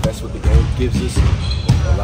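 A man speaking, over basketballs bouncing in the gym and music playing in the background.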